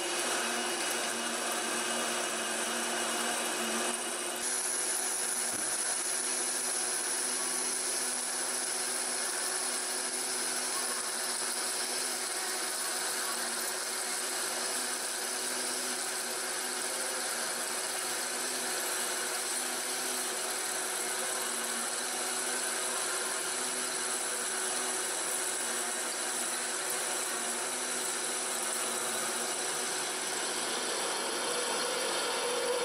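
Nardini metal lathe running steadily while a bit in its tailstock drill chuck bores the centre hole of an aluminium pulley: motor and gearbox hum under the rubbing scrape of the drill cutting, the spindle at about 400 rpm for drilling. A thin high whine joins about four seconds in.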